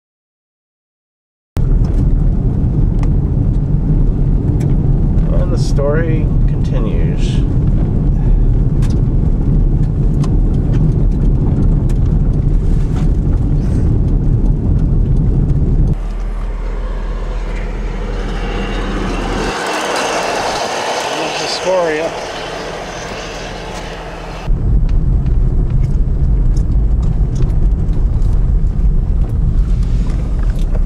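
A vehicle driving on a gravel road, heard from inside the cab: a steady, loud low rumble from the tyres and engine that starts about a second and a half in, after silence. For a stretch in the middle the rumble gives way to a lighter, hissier sound, then it comes back near the end.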